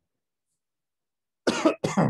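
A man coughing twice in quick succession near the end, after a stretch of silence.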